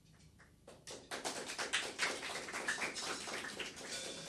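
Audience applause: many hands clapping, starting about a second in.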